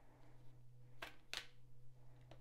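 Tarot cards being handled: two short, faint snaps about a second in as a card is drawn from the deck and laid on the table, over a steady low hum.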